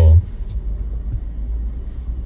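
Steady low rumble of a car waiting at a red light, heard inside its cabin.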